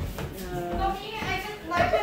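Young children's voices and play noise.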